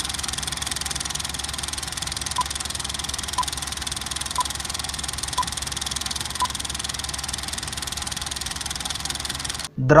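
Running film projector: a steady, rapid clatter, with five short beeps a second apart like a film-leader countdown. It cuts off suddenly near the end.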